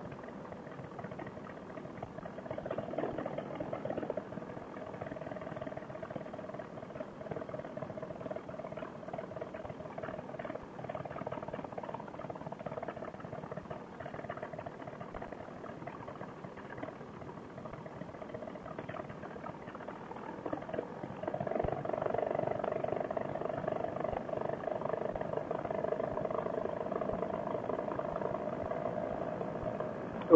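Paramotor trike engine running steadily, heard as a muffled hum through a headset microphone, with wind rush. About twenty seconds in it gets louder and holds there.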